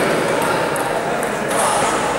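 Celluloid or plastic table tennis balls ticking off tables and bats, a few light, sharp clicks over a steady background hum of voices in a sports hall.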